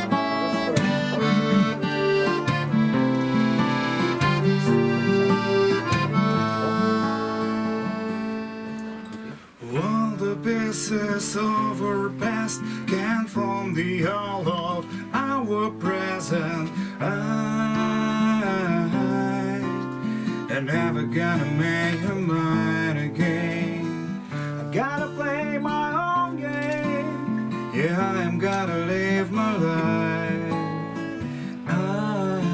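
Live acoustic guitar music. For the first nine seconds or so long chords are held over the guitar. After a brief dip the guitar goes on under a wavering, bending melody line.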